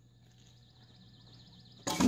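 Faint outdoor background sound with a light wavering high buzz, then near the end a sudden loud whoosh as the picture cuts to another clip.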